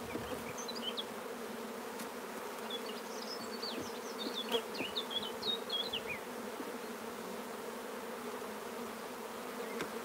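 A honey bee colony buzzing around an opened hive: a steady, even hum.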